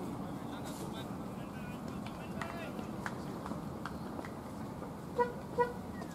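A vehicle horn gives two short toots near the end, over a steady background of traffic noise and faint voices.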